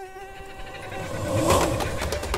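Transition sound effects for an animation: a held electronic tone fades out over the first second while a rising whoosh swells up, peaking about a second and a half in.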